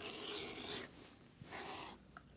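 Edge beveler shaving a thin strip off the edge of 8–9 oz cowhide belt leather, a dry scraping hiss. A longer stroke of almost a second is followed by a short second stroke near the end.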